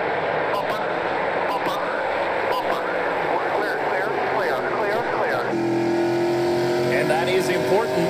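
A pack of NASCAR Pinty's Series V8 stock cars racing at speed, many engines at full throttle sweeping past with shifting pitches. About five and a half seconds in, the sound cuts to a single car's engine heard onboard, holding one strong note that climbs slowly as it accelerates.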